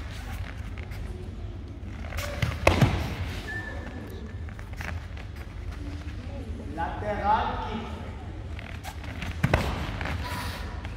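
Sharp thuds from a karate partner demonstration on foam mats: a loud double thud about two and a half seconds in and another near the end, over a steady low rumble.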